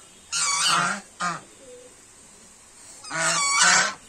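Domestic geese honking: a harsh call about half a second in, a short one just after a second, and a longer call near the end.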